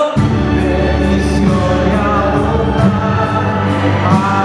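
Karaoke backing track of a Spanish-language Christian song playing loud over a stage PA, with singing over it. The bass comes in suddenly right at the start.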